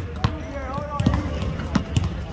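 Several basketballs bouncing on a hardwood court in a large arena, in irregular thuds from more than one ball.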